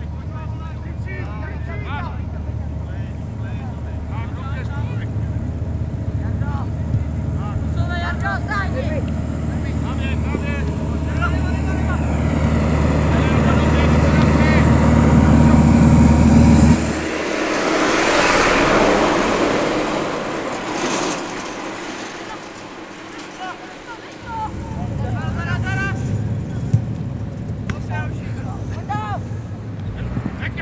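Outdoor football-pitch ambience: wind rumbling on the microphone, dropping out abruptly a little past halfway and returning later, with players' distant shouts. In the middle a passing vehicle's noise swells to the loudest point and then fades away.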